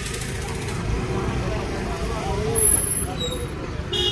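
Faint voices of people talking at a distance over a steady low rumble of outdoor street noise.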